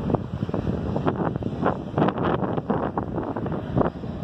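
Wind buffeting a phone's microphone outdoors, an irregular, gusty rumble.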